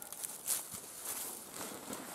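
Fabric rustling as a jacket is pulled off the shoulders and arms, with a brief louder swish about half a second in.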